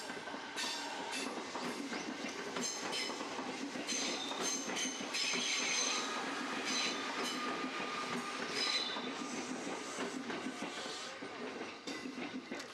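Electric passenger train passing on the rails: steady running noise with repeated clicks of the wheels over rail joints and high-pitched wheel squeals, dying away at the end as the train leaves.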